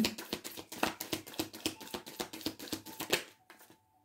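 Tarot cards being shuffled by hand: a quick run of soft card clicks that stops about three seconds in.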